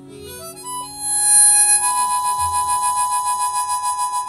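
Harmonica playing a quick run of rising notes, then holding long high notes with a regular wavering, over the band's acoustic guitars.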